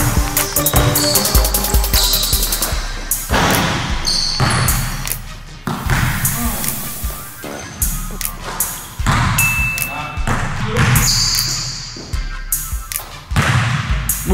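A basketball dribbled on an indoor court's plastic tile floor, bouncing again and again in sharp thuds, under background music.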